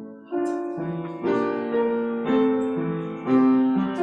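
Piano playing a slow hymn tune, a new chord struck about once a second, each held and ringing into the next.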